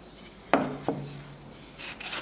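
Wooden pieces knocking twice and then scraping as a thin maple strip is handled against a wooden blank on a table saw top.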